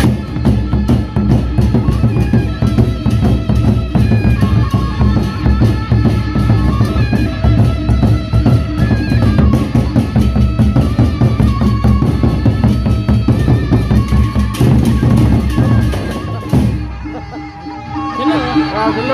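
Gendang beleq ensemble: large Sasak barrel drums beaten with sticks in a dense, driving rhythm, with ringing metal percussion. It eases off near the end.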